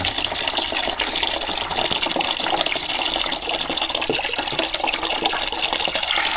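Water running from a water heater's drain valve into a plastic bucket, a steady splashing stream. The flow is slowed because the drain pipe and valve are gunked up with sediment from the tank.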